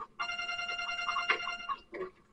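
A mobile phone ringtone: one ring of steady tones lasting about a second and a half.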